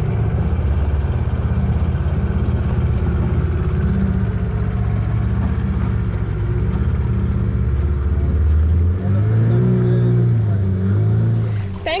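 Small boat's outboard motor running steadily under way. About nine seconds in, its drone drops and the pitch rises and falls as the throttle changes.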